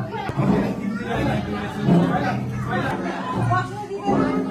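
Several people chattering at once, voices overlapping, with faint music beneath.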